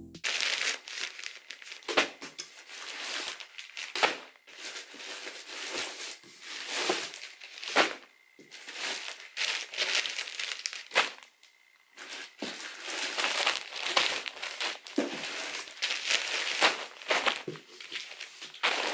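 Plastic mailer and poly bags crinkling and rustling as a parcel is unpacked by hand, in irregular handfuls with a brief lull about two-thirds of the way through.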